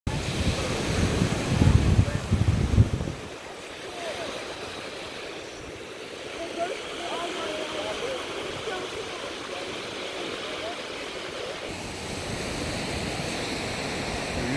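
Ocean surf breaking and washing up on a beach as a steady wash of noise, with wind rumbling on the microphone for the first three seconds.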